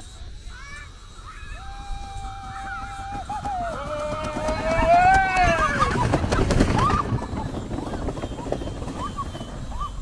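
Long drawn-out whoops from riders sliding down a tubing hill: one held on a single pitch, then one that rises and falls, over wind rushing on the microphone that swells in the middle. A few short yelps follow near the end.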